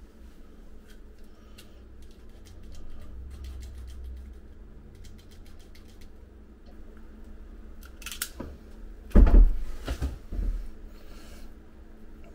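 Knife scoring and trimming the plastic jacket of a coax cable: faint scraping and small clicks. A few dull knocks from handling come about two-thirds of the way in, the loudest near nine seconds.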